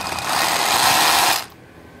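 Makita rotary hammer running free in hammer-drill mode, its air-cushioned hammer mechanism giving a loud, airy striking buzz for about a second and a half before it stops suddenly.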